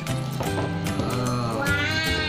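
Background music, with a young girl's high-pitched excited cry that rises in pitch near the end.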